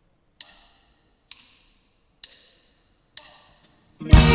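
Drumsticks clicked together four times, evenly about a second apart: a four-count count-in for the band.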